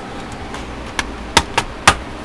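Plastic snap-fit tabs of a Dell Inspiron 15 3000 laptop's bottom cover clicking into place as the cover is pressed down, four sharp clicks in the second half.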